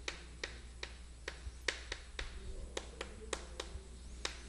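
Chalk tapping and scratching on a chalkboard while writing: a string of short, sharp ticks at an uneven pace, about three or four a second, over a faint steady hum.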